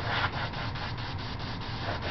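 Quick, even strokes rubbing on drawing paper, about six a second, as a sketch is worked by hand.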